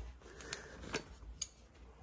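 A few faint, sharp, light clicks scattered over a low background hum.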